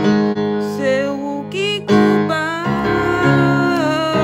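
Piano chords played on a keyboard, held and changing several times, with a singing voice wavering in pitch above them.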